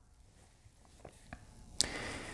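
Faint handling sounds as an instant-read thermometer probe is worked into a raw pork shoulder: a few soft ticks, then one sharp click near the end followed by a light rustle.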